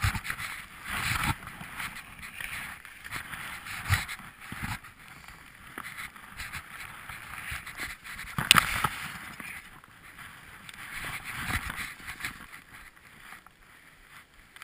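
Skis swishing through deep powder snow in uneven surges while brushing past tree branches, with one sharp knock a little past the middle.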